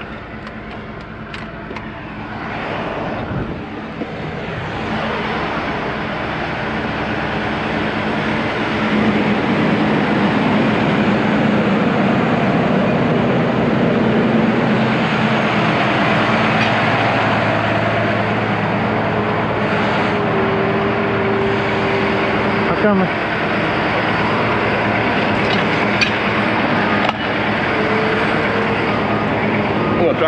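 Heavy wrecker diesel engines running steadily under load while a tanker is pulled upright. The engine noise builds over the first several seconds and then holds, with a couple of sharp clicks near the end.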